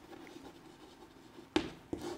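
Chalk writing on a chalkboard: faint scratching strokes, with a sharper, louder stroke about one and a half seconds in.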